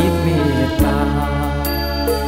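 A Thai luk thung song: a male voice singing over a band with bass and percussion.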